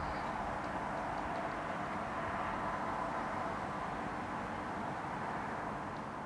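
Steady outdoor ambient noise, an even rushing hiss with no clear tones or events.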